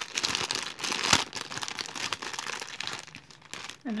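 Thin clear plastic bag crinkling as hands open it and rummage through the paper cards and stamps inside. It is busiest in the first second and a half, with one sharp crackle about a second in, then quieter handling.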